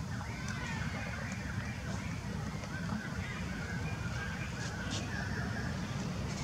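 Outdoor background sound: a steady low rumble with faint, wavering high calls and a few soft clicks.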